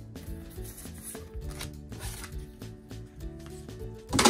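Soft background music with held notes, under faint clicks and flicks of Pokémon trading cards being handled.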